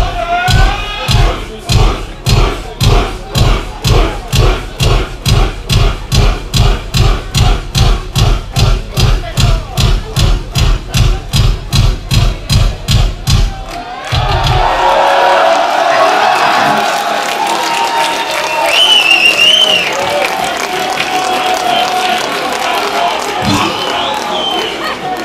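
Live kick drum pounding a steady beat of about three thumps a second, then stopping abruptly about fourteen seconds in. After it stops, the crowd cheers and shouts.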